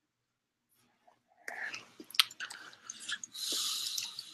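A child's mouth noises close to the microphone, starting about a second and a half in: a run of smacks and clicks, then a longer breathy hiss near the end.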